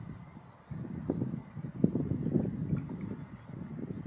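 Wind buffeting the camera microphone: an uneven, gusty low rumble that drops away briefly about half a second in, then picks up again.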